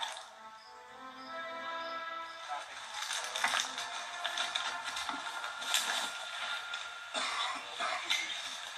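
Background music from a film featurette heard off a television, with long held notes at first and growing busier with scattered clicks and knocks about three seconds in.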